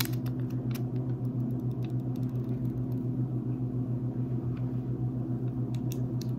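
A steady low hum that pulses evenly, from a running appliance, with a few faint paper crinkles as a tattoo stencil transfer sheet is slowly peeled off a synthetic practice skin.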